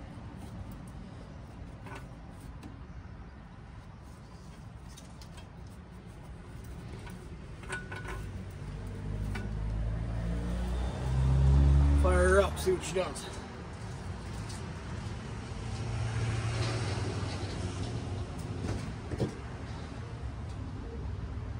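A few small clicks and taps of hands seating a rubber intake tube and hose clamp under the hood, then a low rumble that swells about halfway through and falls away, as of a vehicle passing.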